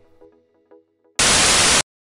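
Faint background music tones fading out, then a loud burst of TV-style static hiss lasting about half a second that cuts off suddenly: a transition sound effect into the end screen.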